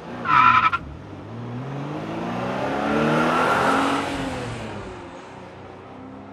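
A car engine pulling up in pitch, then easing off, with rushing road noise that swells and fades, heard from inside a moving car. A brief high tone sounds in the first second.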